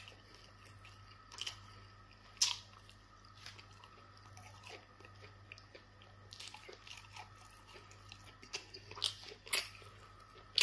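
Close-miked chewing and mouth sounds of a person eating fufu and spicy meat stew: scattered short wet smacks and clicks, the sharpest about two and a half seconds in and a few close together near the end, over a faint steady low hum.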